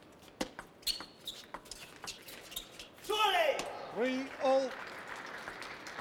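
Table tennis rally: the ball clicks sharply off bats and table about half a dozen times in quick succession. About three seconds in the point ends, and shouts ring out over crowd noise.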